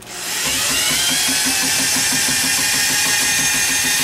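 Cordless drill spinning the drum and cable of a drum drain snake (power auger) as the cable is fed into a kitchen sink drain against a clog. The motor whine rises as it spins up during the first second, then runs steadily with a regular rattling beat of about four a second.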